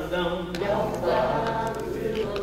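A small group of voices singing unaccompanied, slow held notes of a spiritual.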